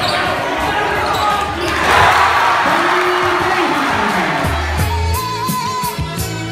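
Basketball bouncing on a hardwood gym floor amid crowd noise that swells loudest about two seconds in. Music with a steady bass beat comes in over the last part.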